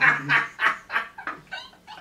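A man laughing hard: a run of quick breathy 'ha' bursts, about three a second, growing weaker and dying away near the end.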